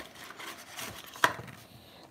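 Stack of wrapped card packs sliding against a cardboard trading-card box as they are pulled out, a low rubbing rustle with one sharp tap a little past halfway.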